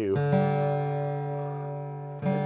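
Boucher SG-51 rosewood OM acoustic guitar with one chord strummed just after the start. The chord is loud and is left ringing, fading slowly.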